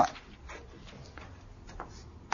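A few faint short squeaks of writing on a board, spaced about half a second apart.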